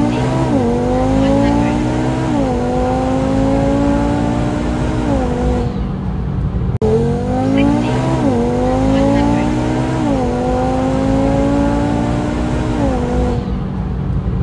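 Stage 3 big-turbo Audi TT RS 2.5-litre turbocharged five-cylinder engine pulling at full throttle, heard from inside the cabin. Its pitch climbs through each gear and drops sharply at each quick upshift of the dual-clutch gearbox, three shifts per pull. About seven seconds in there is an abrupt break, and a second full-throttle pull starts over with the same three upshifts.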